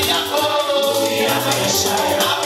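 Gospel worship music with a group of voices singing together over an accompaniment with a steady low bass line.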